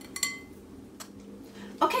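Metal measuring spoon tapping a glass mixing bowl: a short clink with a brief ring, then a second lighter tap about a second later.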